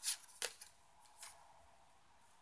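Tarot cards being handled as a card is drawn from the deck and flipped: three short papery flicks, two close together just after the start and a softer one a little over a second in.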